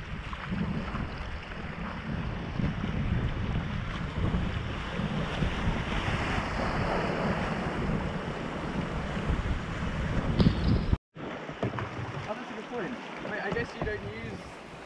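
Fast whitewater river rushing and splashing around a kayak, with wind buffeting a helmet-mounted GoPro microphone. The sound cuts out completely for a moment about eleven seconds in, and the water is quieter afterwards.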